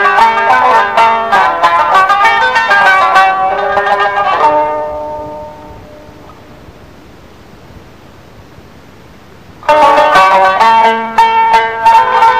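A plucked string instrument playing a rapid, ornamented taqsim improvisation in the Moroccan tradition. The notes die away about four and a half seconds in, leaving a few seconds of faint hiss. The playing then comes back abruptly and loudly near the ten-second mark.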